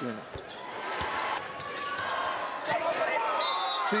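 A basketball bouncing on a hardwood court, a couple of thumps in the first second, under arena crowd noise and shouting that grows louder.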